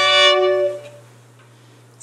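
A long bowed note on the fiddle, several pitches sounding together at an even level, that stops about three-quarters of a second in; a low steady hum remains after it.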